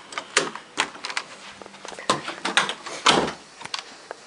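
Irregular sharp clicks and knocks of things being handled close by, the loudest a little after three seconds in.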